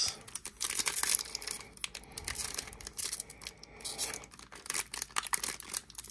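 A sealed 2022 Panini Prizm football card pack being torn open by hand, its wrapper crinkling in quick, irregular crackles.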